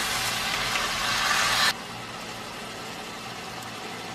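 Chicken stock pouring into a hot skillet of browned ground beef and tomato sauce, sizzling loudly; the sizzle cuts off suddenly under two seconds in, and a quieter steady hiss follows.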